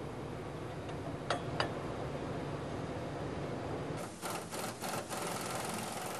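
Car-shop background hum with a few sharp metallic clicks and knocks from tools working on steel suspension parts: two clicks a little over a second in, then a quick cluster of them about four to five seconds in.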